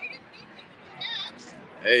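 A man's voice calls out a loud, drawn-out "Hey" near the end as a greeting, after faint street background.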